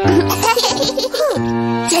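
A young child's voice giggling, over background music.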